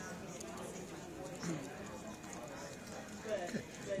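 Faint murmur of background conversation from other groups in a large hall, with a brief spoken "okay" near the end.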